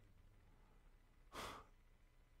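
Near silence with a single short breath from the preacher, heard a little over a second in.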